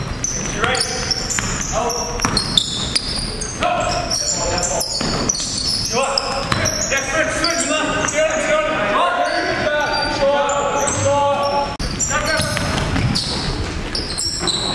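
Basketball dribbled on a hardwood gym floor, heard as repeated thuds, with players' voices calling across the court.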